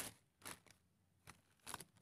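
Faint, brief rustles of a black plastic sack and fine rice bran being handled by hand: a few short scrapes spread across the two seconds.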